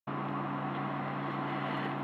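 Steady low hum with a faint hiss behind it, unchanging throughout.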